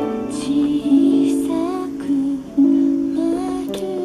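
Music played through a full-range loudspeaker driven by a 14GW8 triode-pentode tube amplifier, whose output transformer is a cheap multi-tap autotransformer modified for isolation. The sustained notes change every half second or so, forming a melody.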